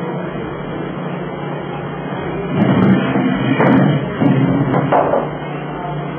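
Handling noise from a hose fitting being worked onto an LPG cylinder valve: a few knocks and clatter in the middle, over a steady background hum.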